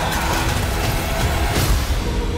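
Movie trailer soundtrack: music mixed with fire and explosion effects, a loud, dense wash of sound with a heavy low rumble throughout.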